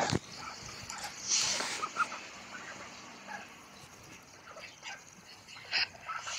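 A domestic duck giving a few short, soft calls while it pecks at paving stones; the sounds are faint and scattered, with a sharp tap near the end.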